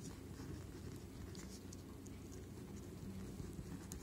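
Pen writing on paper: faint, short scratching strokes over a low, steady background hum.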